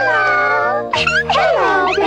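High-pitched cartoon creature voices in two squeaky, gliding calls, over background music.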